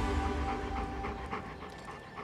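A dog panting quickly, about five breaths a second, over background music.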